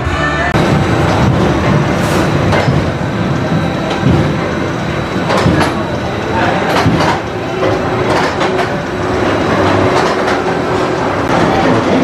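Twisted Cyclone roller coaster train running on its track: a steady rumble with scattered sharp clacks.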